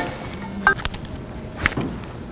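Handling noise on a clip-on microphone: a few sharp knocks and taps with some rustling, the loudest about a second and a half in.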